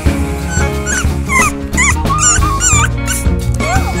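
A newborn American Bully puppy whimpering in several short, high, wavering cries over background music with a steady bass line.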